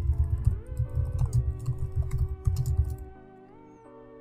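Computer keyboard typing in quick irregular keystrokes, over background music with sustained chords that shift in pitch. The typing stops a little before the end, leaving the music alone.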